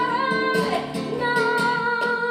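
Female flamenco singer holding long, wavering sung notes over acoustic guitar playing.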